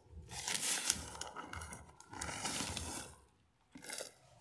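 Potting soil being scooped and poured into a plastic planter with a plastic scoop, gritty rustling against plastic, in two pours of about a second and a half each; it goes quiet near the end.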